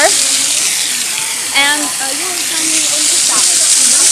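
Fountain water splashing and pouring steadily, a constant hiss, with people's voices calling and murmuring over it.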